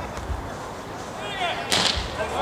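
Beach volleyball rally: the ball is struck by players' hands and arms, with faint hits early on and one loud, sharp hit near the end, just after a brief voice.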